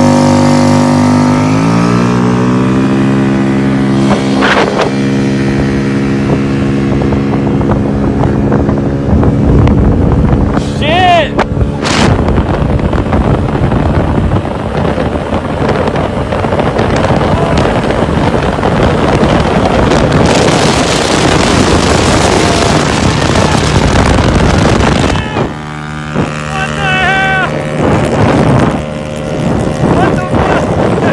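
Honda Metro scooter's big-bore 81 cc four-stroke engine pulling at full throttle from a standing start. Its note climbs over the first couple of seconds and then holds steady. Wind rushes over the microphone as speed builds, and a voice shouts briefly twice.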